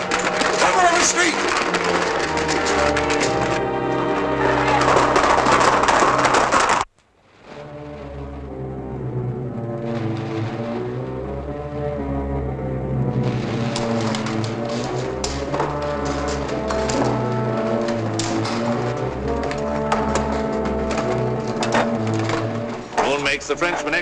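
Orchestral film score. A loud passage cuts off abruptly about seven seconds in, then the music comes back quieter and swells up again.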